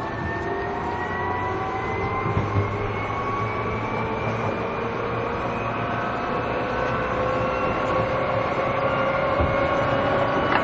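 Seibu New 2000 series electric train running and gathering speed, heard on board. Its traction-motor whine, the chopper sound, rises slowly and steadily in pitch as several tones together, over the steady rumble of the wheels on the rails.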